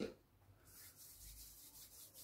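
Palms rubbing together to spread hand sanitizer gel: a faint, rhythmic swishing that starts about half a second in, after a short click at the very start.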